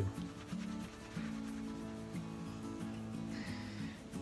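Background music with a steady beat of low notes, over a cloth rag rubbing and buffing paste wax on a wooden piece, a soft hiss that grows near the end.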